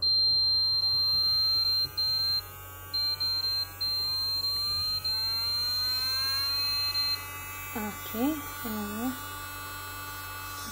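IMD-207 electric nail drill's handpiece motor running and speeding up, its whine rising slowly in pitch for about seven seconds as the speed is turned up on the base unit, then holding steady. A louder, high, steady tone sounds over it, breaking off a few times and stopping about seven seconds in.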